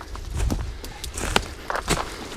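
Footsteps through dry fallen leaves: a few quick, uneven steps, each a short rustling crunch.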